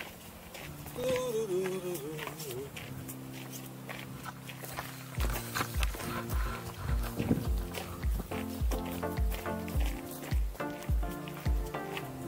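Background music: a wavering melodic line at first, then sustained chords, joined about five seconds in by a steady kick-drum beat of about two beats a second.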